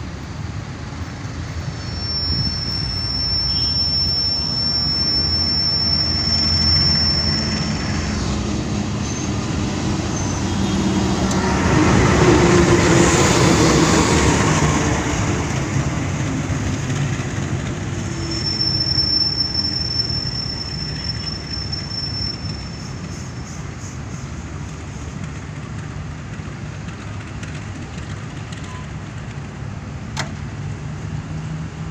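A passenger train hauled by a CC 201 diesel-electric locomotive runs slowly alongside the platform with a steady rumble. A thin, high squeal from the running gear is held for several seconds, twice, and the noise swells loudest about twelve seconds in.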